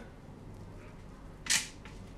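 Quiet room tone, with one short, sharp scuff about one and a half seconds in as hands set a ball of cookie dough down on a metal baking tray.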